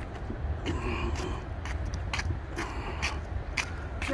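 Footsteps scuffing along a rough paved path, about two steps a second, over a steady low rumble.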